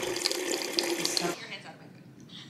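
Water from a refrigerator door dispenser pouring into a glass mason jar, a steady rush that stops about a second and a half in.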